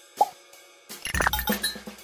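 Production-logo sting: a single short pop just after the start, then from about a second in a deep boom and a quick run of bright percussive hits set to music.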